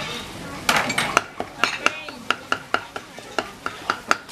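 Cleaver chopping grilled meat on a cutting board: a run of sharp chops, about four a second, each with a brief metallic ring, starting about a second in.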